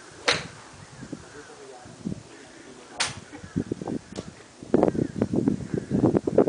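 Two sharp cracks of a golf club striking a ball, about three seconds apart, at a driving range.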